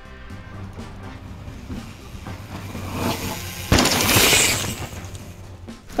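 Background music throughout; a little past the middle a sudden thump followed by about a second of gritty hiss, a mountain bike landing off a low wooden drop and its tyres skidding on dirt.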